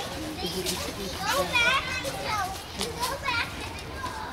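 Young children playing, their voices rising and falling in high, wavering calls and chatter, loudest about a second and a half in and again near the end, over a steady low background rumble.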